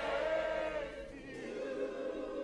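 Gospel church choir holding a sung chord, which ends about a second in, leaving quieter music underneath.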